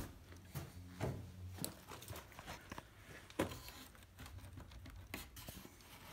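Faint, scattered light knocks and rustles of hands working on wooden floor framing and joists, irregular and a second or so apart.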